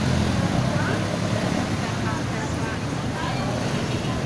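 Steady traffic noise at a busy intersection: the engines of cars, jeepneys and motorcycle tricycles running in a continuous low rumble, with faint voices mixed in.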